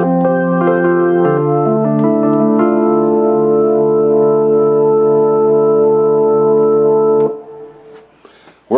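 Simple software organ patch played from a MIDI keyboard, overlapping chords held on by a sustain pedal so they build and ring together. Partway through, one chord goes on sounding steadily with no hands on the keys, then cuts off suddenly near the end.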